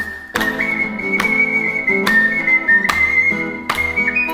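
Noble mini ocarina (Italian-style) playing a melody of high, held notes over acoustic guitar strumming an accompaniment, with a brief break in the melody just after the start.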